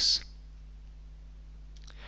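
A low steady hum sits under the recording, with a couple of faint small clicks near the end.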